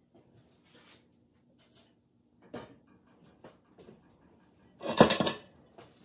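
Glazed stoneware mugs clinking as one is lifted out of an electric kiln. There are a few faint taps, then a loud clatter of ceramic clinks about five seconds in.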